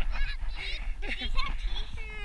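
Children's excited wordless shouts and squeals: several short, high cries that rise and fall in pitch.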